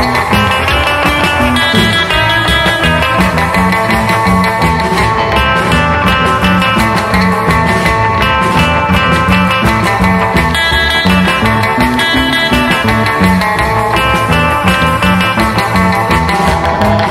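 Early-1960s instrumental guitar-band rock: electric lead guitar playing the melody over rhythm guitar, bass guitar and drums at a steady beat.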